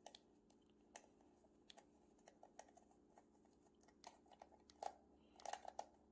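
Small Phillips screwdriver turning a screw out of the plastic battery cover on the back of a night light: faint, irregular little clicks and ticks, coming more often near the end.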